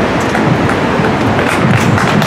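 Steady rush of city street traffic, with faint voices in it.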